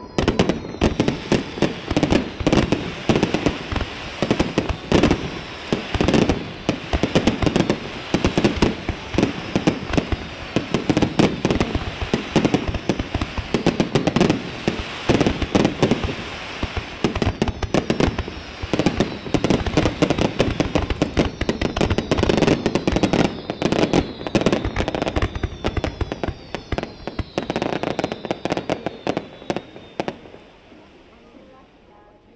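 Aerial fireworks display in a dense barrage: many shells bursting in quick succession with booms and crackling, over thin whistles falling in pitch, mostly in the second half.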